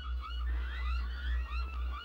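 Small birds chirping, many short rising chirps overlapping, over a low steady rumble.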